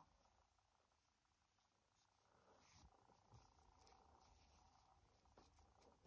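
Near silence, with faint handling noise of yarn and crochet work from about two seconds in.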